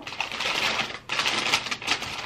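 White wrapping rustling and crinkling as an item is unwrapped by hand, with a brief lull about halfway through.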